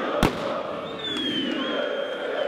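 A single sharp firecracker bang in a football stadium over a crowd of fans chanting. A thin high whistle sounds about a second later.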